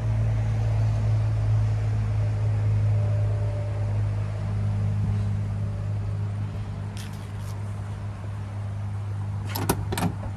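Steady low hum of an idling engine, with a quick cluster of metallic clicks from the pickup's door handle and latch being pulled open near the end.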